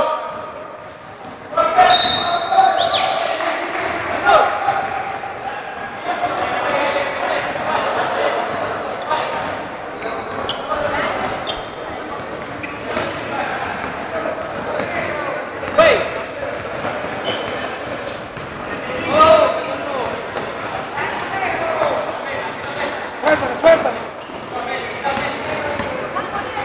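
Basketball game in a large sports hall: a ball bouncing on the court floor amid players' shouts and calls, with a short high whistle about two seconds in.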